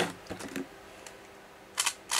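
Handling noise: a sharp click or knock at the start, a few faint knocks just after, then quiet room tone, and a couple of short clicks near the end.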